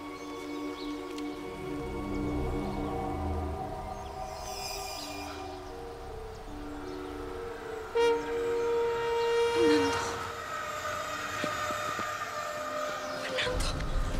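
Dramatic background music of long held notes, with a sudden louder chord about eight seconds in.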